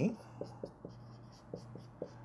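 Dry-erase marker writing on a whiteboard: a string of short, faint strokes as letters are drawn.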